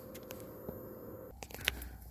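Quiet room tone with a few faint clicks and a sharper click about one and a half seconds in; a low hum comes in just before that click.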